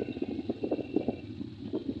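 Wind rumbling on the microphone of a camera moving along a road, a low steady rumble with irregular faint crackles.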